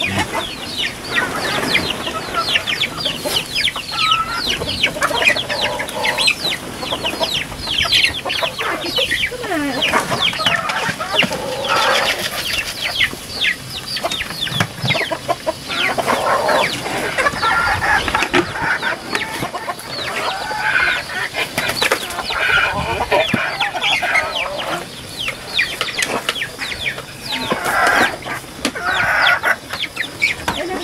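A flock of chickens clucking, with many short calls overlapping one after another all the way through.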